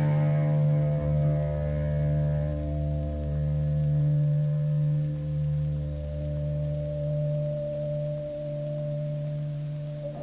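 A punk band's electric guitar and bass letting the final chord of a song ring out after the last hit: one steady held chord that wavers slightly and slowly fades. It has the dull, lo-fi sound of a cassette demo recording.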